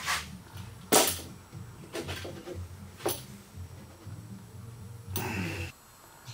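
Paracord being pulled and cinched tight around a wooden spear shaft: short rasping pulls about a second apart, with a longer one near the end, over a low steady hum.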